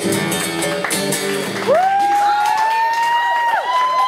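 An acoustic guitar's last strummed chord rings out and fades in the first second and a half, under audience applause. About halfway through, a long high-pitched cheer rises and is held over the clapping.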